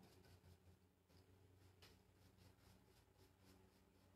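Near silence: room tone, with faint soft strokes of a paintbrush on a painted wooden drawer.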